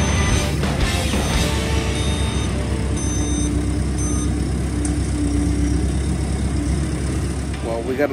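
Telehandler's diesel engine running at a steady rumble while it unloads a flatbed, with a reversing alarm beeping about once a second.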